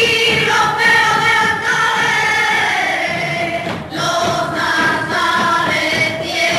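A group of women singing a flamenco song together, with a short break between phrases about four seconds in.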